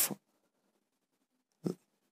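Near silence between spoken phrases, broken near the end by one short breath taken just before speaking resumes.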